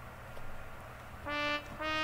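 Two short notes of MuseScore's synthesized trumpet sound at much the same pitch, about half a second apart, played back as notes are entered into the trumpet part of the score. They come in the second half, after a low hum.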